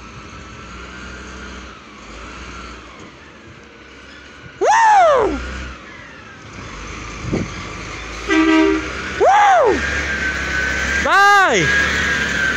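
A recycling truck approaches and passes close by, its diesel engine rumble and a steady whine building over the last few seconds, with a brief horn toot about eight seconds in. A person whoops loudly three times over it.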